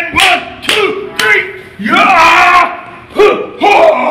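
Men yelling and shouting in a rapid series of loud bursts, with a longer yell about two seconds in.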